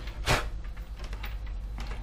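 A tablet being handled on a wooden table: one short, loud knock about a third of a second in as it is turned and set down. A few faint scrapes follow, from a thin blade working at old adhesive on the tablet's frame.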